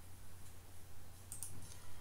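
A few faint clicks of a computer mouse in the second half, over a low steady hum.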